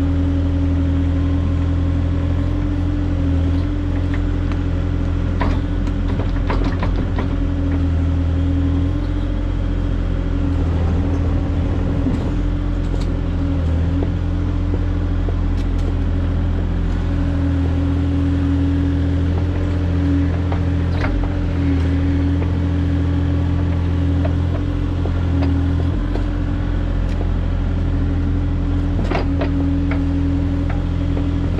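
Kubota mini excavator's diesel engine running steadily while digging, with a few scattered sharp clanks of the bucket working the soil.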